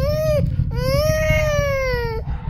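Huskies howling: a short howl, then a long one that rises slightly and falls away, over a steady low rumble. The dogs are reacting to the sound of a rocket launch.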